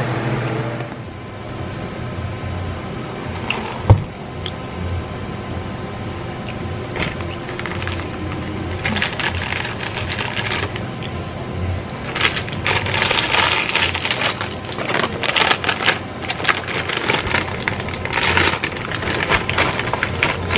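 Plastic snack bag crinkling and rustling as it is handled, in irregular bursts through the second half, with one sharp click about four seconds in.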